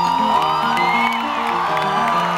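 Salsa band playing live, heard from inside the audience, with the crowd cheering and whooping over the music.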